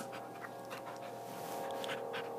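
A dog panting close by in short breathy puffs, with a held musical chord sounding underneath.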